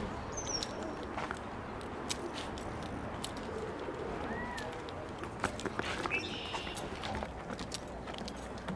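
Faint, scattered bird calls over a steady outdoor background, with a few light clicks.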